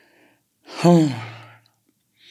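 A woman's drawn-out hesitation sound, a long "eee", falling in pitch and then held low like a sigh, after a faint breath at the start.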